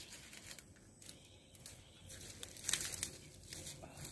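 Faint rustling and crackling, with a cluster of small clicks and scrapes about three seconds in.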